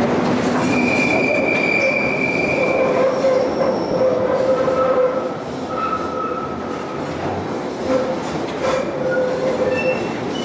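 London Underground 1972 Stock deep-tube train running into the platform, with the rumble of wheels on rail. The wheels squeal in several pitches: a high squeal for about two seconds near the start, then lower squeals in the middle. The sound eases a little about halfway as the train slows alongside.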